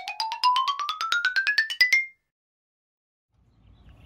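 An edited-in musical sound effect: a fast run of bright, mallet-like notes climbing steadily in pitch, ending abruptly about two seconds in. A second or so of dead silence follows, then faint outdoor background noise returns near the end.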